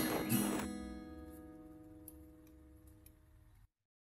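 Background music: a held chord rings and fades out over about three seconds, and the sound cuts off to silence shortly before the end.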